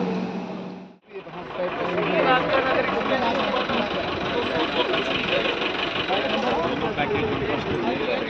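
Indoor voices over a steady hum cut off abruptly about a second in. They are replaced by a steady outdoor background of several people talking over engine noise.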